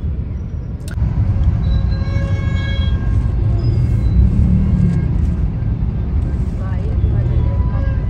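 Motorcycle riding noise: steady low wind rumble on the microphone over the engine of a Hero XPulse 200 4V at road speed. Faint held tones, like a distant horn or voice, come through briefly about two seconds in and again near the end.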